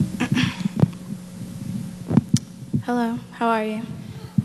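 A microphone being handled at a lectern: several low thumps and a sharp click, over a steady low hum from the sound system. Near the end come two short hummed vocal sounds, like "mm-hm".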